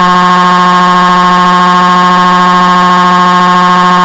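Loud cartoon crying sound effect: a drawn-out wail held at one perfectly steady pitch, with no breaks or wavering.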